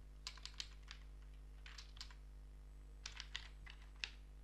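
Typing on a computer keyboard: several short runs of quick keystroke clicks with pauses between them, over a faint steady low hum.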